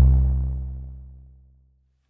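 Ruismaker Noir drum synth run through the Eventide CrushStation distortion plugin: the last heavily distorted low note rings on after the beat stops and fades out smoothly over about a second and a half.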